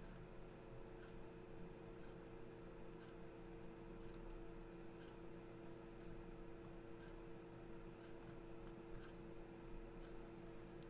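Near silence: faint scattered clicks from a computer mouse and keyboard being used, over a steady low electrical hum.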